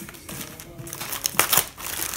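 Clear plastic packaging bag crinkling as it is handled and pulled off a cardboard knife box, with a cluster of sharp crackles about one and a half seconds in. Faint music plays underneath.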